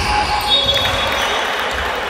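Basketball being dribbled on a hardwood gym floor, with players' voices in a large echoing sports hall.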